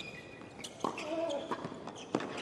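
Tennis ball struck back and forth in a doubles rally on a hard court: several sharp racket hits, with short vocal sounds from the players between them.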